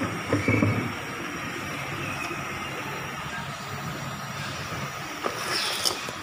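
Steady background rumble with a short, louder knock about half a second in and two brief sharp knocks near the end.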